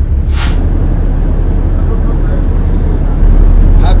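Deep, steady rumble of a harbour tug's diesel engines working hard against a ship's side, growing louder about three seconds in. A short hiss comes about half a second in.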